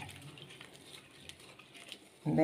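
Faint sloshing of water as a hand squeezes soaked dried bilimbi pieces in a steel pot.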